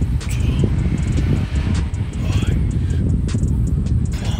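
Wind buffeting the microphone outdoors, a dense, gusty low rumble throughout, with brief faint voice sounds over it.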